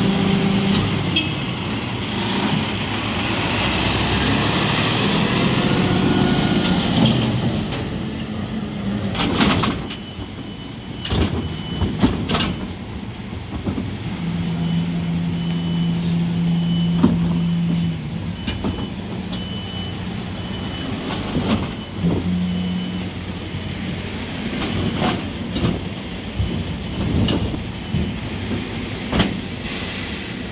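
Mercedes-Benz Econic refuse lorry with a Geesink rear-loader body: its diesel engine runs with shifting pitch as it pulls in. Then come several sharp bangs as trade bins are handled at the rear lift, an evenly repeating high beep lasting about ten seconds, and a few seconds of a steady engine note midway.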